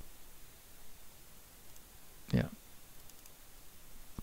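A few faint computer mouse clicks over quiet room hiss.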